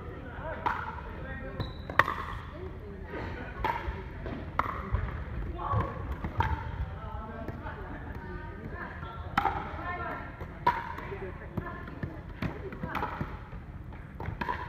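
Pickleball paddles hitting the plastic ball, with ball bounces on the wooden court floor: a series of sharp, irregular pops that echo in a large hall, over indistinct background voices.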